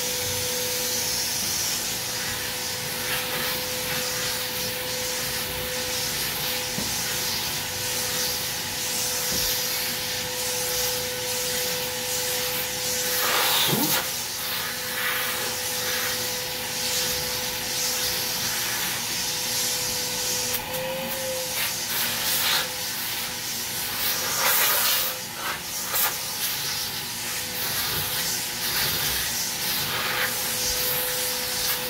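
A vacuum running steadily with a constant whine as its hose is drawn over freshly clipped hair to suck up the cut hair, with a couple of brief louder rushes as the nozzle shifts against the head.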